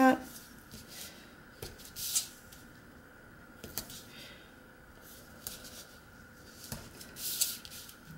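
Double-sided adhesive tape being pulled off its roll and pressed onto cardstock: a few short tearing rasps, with soft paper rustles and taps between them.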